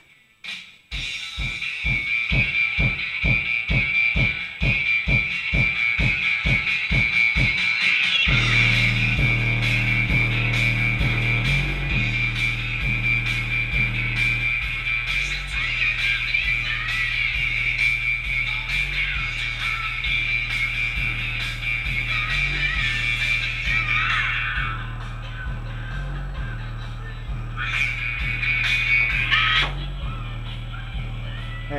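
Bass-heavy music played loud through a pair of Massive Audio Hippo XL64 six-inch subwoofers. It opens with a fast beat of bass pulses, about three a second; about eight seconds in, sustained bass notes take over and step in pitch.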